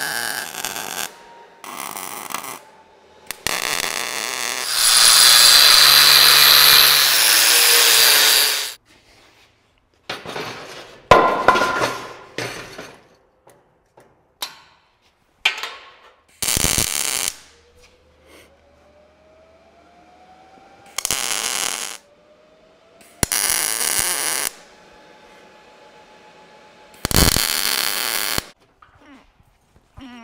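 MIG welder tacking steel square-tube legs onto a steel cargo basket: a string of short bursts of crackling arc, each about a second long, with one longer, louder weld from about five to nine seconds in.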